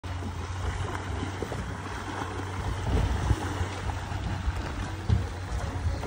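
Sea water washing around a boat's hull with wind noise, over a steady low hum, and a couple of dull thumps about halfway through and near the end.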